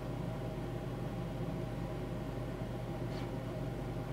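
Steady room tone: a low electrical hum with an even hiss, with a faint short sound about three seconds in.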